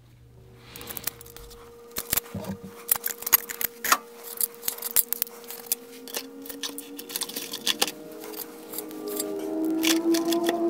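Quick metallic clicks and clinks of roller lifters and small parts being handled and pulled out of the lifter bores of a bare engine block. Soft background music with long held notes runs underneath.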